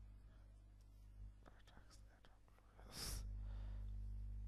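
Faint computer-keyboard typing, a few soft clicks, then a brief breathy noise about three seconds in, over a steady low hum.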